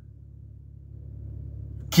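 Low, steady car rumble heard from inside the cabin, growing slightly louder over the two seconds.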